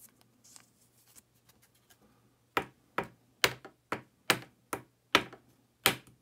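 Faint handling rustle, then sharp plastic clicks about two a second starting about two and a half seconds in, from trading cards in hard plastic holders being handled on a table.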